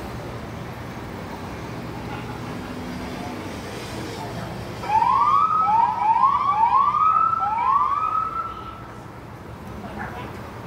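Police siren sounding a quick series of short rising whoops, about five in three and a half seconds, starting about halfway through, over a low steady traffic hum.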